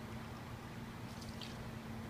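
Rum trickling from a bottle into a metal jigger and then into a mixing glass, faint, over a steady low electrical hum.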